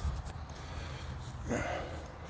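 Steady low rumble of wind on a phone's microphone outdoors, with a short murmured vocal sound about one and a half seconds in.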